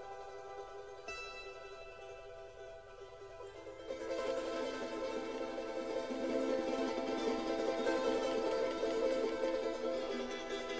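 Instrumental Andean folk music: held notes with a plucked string note about a second in, then about four seconds in a fast-strummed string instrument comes in over fuller backing and the music grows louder.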